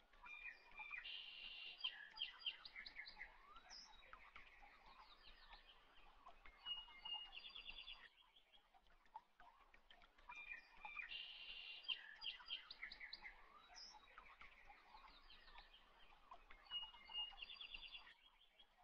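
Faint birdsong: many short chirps and trills from several birds, the same stretch of song repeating about every ten seconds like a looped recording.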